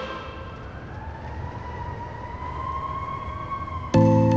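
A quiet interlude in an electronic song's intro: a single drawn-out synth tone slowly rises in pitch over a hissing wash, sounding like a distant siren. It starts as the reverberation of a big hit fades, and the full beat cuts in at the very end.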